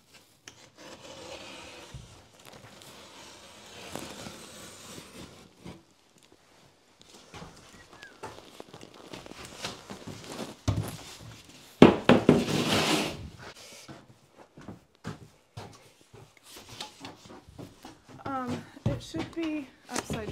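Drywall sheets being handled: gypsum board scraping and rubbing as sheets are shifted and pulled off a leaning stack, with a sharp knock about twelve seconds in followed by a second or so of scraping. Soft talk near the end.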